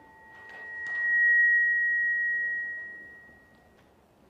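A single high, steady whistling tone of PA microphone feedback swells up over about a second, holds, and fades away shortly before the end, with a couple of faint clicks as it begins.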